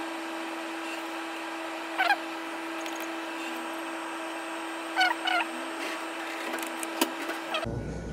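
Bank ATM working through a cash withdrawal: a steady hum, short chirping machine sounds about two seconds in and twice around five seconds, and a click near seven seconds as it dispenses the notes.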